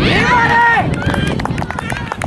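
A spectator's high-pitched, drawn-out shout lasting just under a second, followed by scattered sharp handclaps from the sideline of a youth football match.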